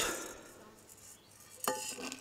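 Black peppercorns rattle briefly as they are tipped from an enamel bowl into a glass jar. Near the end the enamel bowl knocks against the jar with a short clink that rings briefly.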